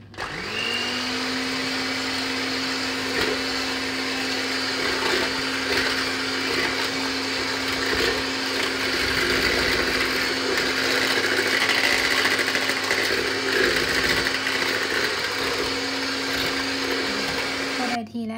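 Electric hand mixer beating oil, sugar and eggs in a plastic bowl: the motor spins up within half a second to a steady hum, runs evenly, and is switched off at the end.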